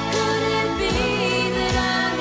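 A woman singing a song live with an orchestra, holding notes with vibrato.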